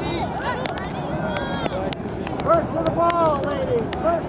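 Indistinct shouts and calls from voices across an outdoor soccer field, loudest about two and a half seconds in, over a steady haze of wind on the microphone and scattered sharp ticks.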